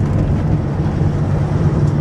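Car's engine and road noise heard from inside the cabin while driving: a steady low drone with an even rushing noise over it.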